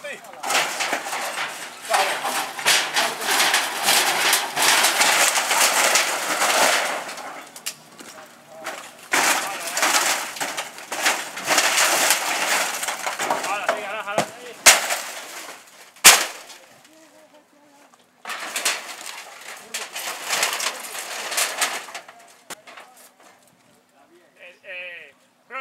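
A wood-and-corrugated-metal shack being pulled down: wooden poles and boards cracking and splintering and metal sheets rattling and crashing, in several long bursts. One single sharp crack about two-thirds of the way through is the loudest.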